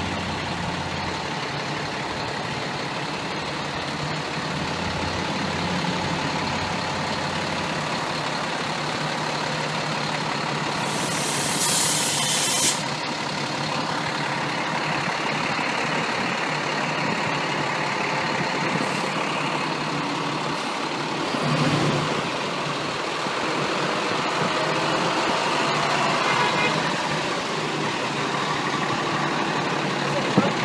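Fire engine's diesel idling steadily, with a short burst of air hissing from its air brakes about eleven seconds in.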